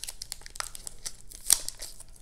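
Clear plastic card sleeves and packing tape crinkling and crackling in short irregular bursts as a taped bundle of trading cards is pulled apart by hand, with one sharper crackle about a second and a half in.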